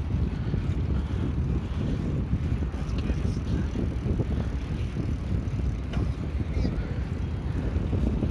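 Bicycle rolling along a paving-tile path: a steady low rumble of the tyres over the tiles, mixed with wind buffeting the microphone, with a couple of faint clicks from small bumps.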